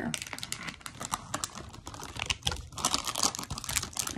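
Foil blind-bag wrapper crinkling as it is handled: a dense, irregular run of crackles.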